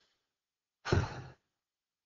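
A man sighing once, a single loud breath out lasting about half a second, about a second in.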